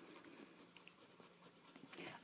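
Faint scratching of a Crayola colored pencil shading on paper.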